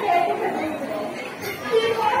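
People talking, several voices in a general chatter.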